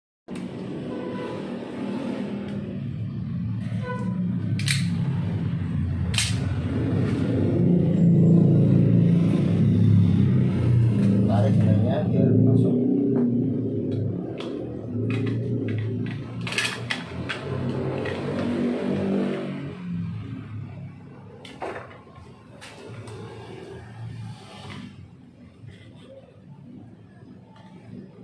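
A voice that the recogniser did not catch as words, with music under it, louder around the middle and fading after about twenty seconds. Several sharp clicks come through as the chrome handle cover is handled and pressed onto the door.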